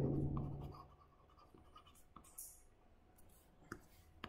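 Faint stylus strokes on a tablet while handwriting: a short scratch about halfway through and a sharp tap near the end.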